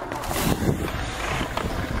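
BMX tyres rolling over a concrete skatepark ramp as the bike rides up to air out of it, with wind on the microphone.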